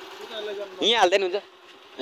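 A steady low hum, with a short burst of a person's voice about a second in.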